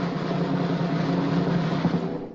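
Snare drum roll: a fast, even roll of strokes held at a steady level, starting to fade near the end.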